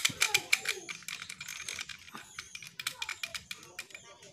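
Rapid, irregular metallic clicking and rattling from the loose pump lever linkage of an uklik pump-action air rifle as it is waggled by hand. The rattle is the sign of play in the pump: the pins and roll-pin holes in the pump lever have worn wide.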